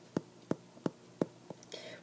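Faint, sharp clicks at about three a second from a stylus tapping on a tablet screen as a word is handwritten.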